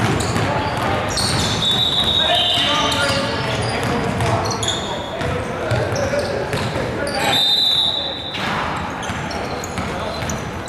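Indoor basketball game in a gymnasium: a ball bouncing on the hardwood court, players' voices, and high-pitched squeaks, twice, about a second in and again past seven seconds.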